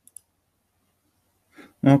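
A single computer mouse click: two quick, sharp ticks a split second apart right at the start.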